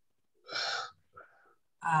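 A person's sharp intake of breath, a short gasp about half a second in, followed by a fainter, shorter breath.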